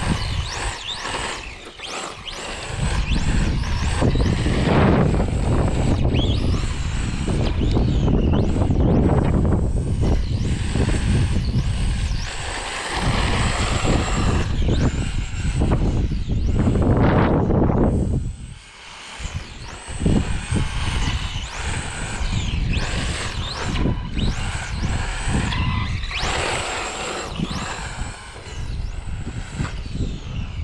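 Wind buffeting the microphone, the loudest sound throughout, over the thin whine of a brushless electric RC car motor rising and falling again and again as the car speeds up and slows on asphalt.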